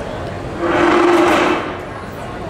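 A loud slurp, about a second long, as liquid is drunk straight from a tipped paper bowl, over the murmur of a crowded food court.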